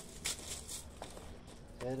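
Two short rustles of a plastic tarp in the first second, then a light tap about a second in, as it is prodded with a stick; a man's voice says a word at the very end.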